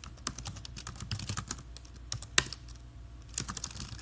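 Typing on a computer keyboard: irregular quick key clicks, one louder keystroke a little before the halfway point and a fast flurry of keys near the end.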